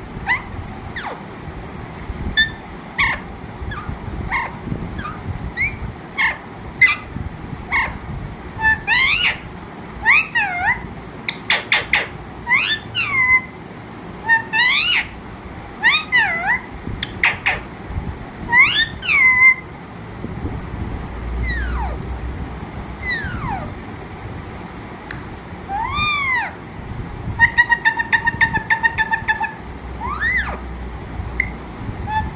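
Alexandrine parakeet calling: a long string of short squawks and whistled calls, many sliding down in pitch, with a quick chattering run of repeated notes near the end.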